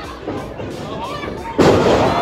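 A wrestler slammed down onto the wrestling ring canvas about one and a half seconds in: a single sudden, loud slam over crowd shouting, with the crowd breaking into a drawn-out reaction right after it.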